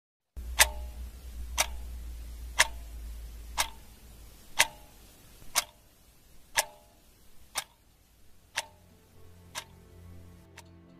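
A clock ticking evenly once a second, ten ticks in all, each with a brief ringing tone, getting fainter as it goes. A low rumble sits under the first few ticks and fades out by about halfway.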